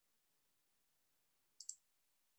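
Near silence with one brief, light double click about one and a half seconds in.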